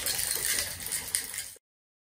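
Water sloshing inside a shaken clear jar, with the sand, shells and marbles in it rattling and clicking against the sides; the sound cuts off abruptly about a second and a half in.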